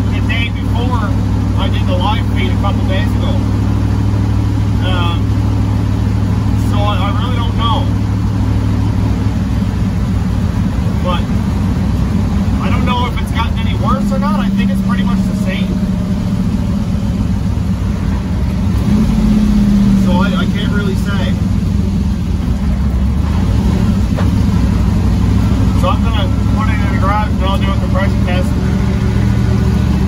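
Twin-turbo destroked 6-litre V8 of a 1957 Chevy pickup running under way, heard from inside the cab as a steady low drone mixed with road noise. The engine note climbs about halfway through and again a few seconds later.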